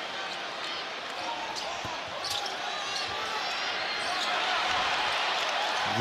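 Basketball game sound in an arena: a steady crowd din with a basketball being dribbled on the hardwood court. A few short high squeaks come about two to three seconds in.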